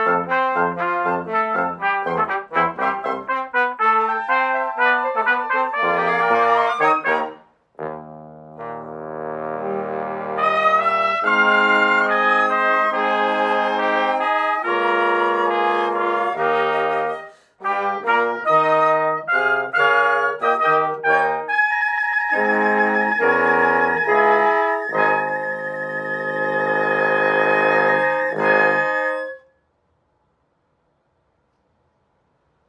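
Small wind ensemble of trumpet, two trombones, flute, alto saxophone and clarinet playing a Chinese New Year medley. The music pauses briefly twice between sections and stops just before the end.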